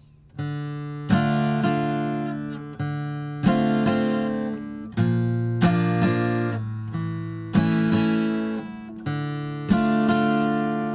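Steel-string Martin acoustic guitar strummed through a chord sequence of D minor, D minor 7, B flat, A major and back to D minor, the chord changing about every two seconds.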